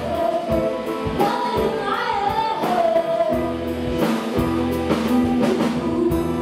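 A live band playing a song, a woman singing lead over keyboard, strings and drums keeping the beat; a sustained low bass line comes in about halfway through.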